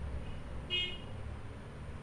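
A brief high-pitched toot about a second in, over a low steady background hum.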